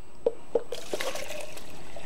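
Water being poured from a clear plastic water tank into a jug, a steady splashing pour that starts under a second in after a few light plastic knocks.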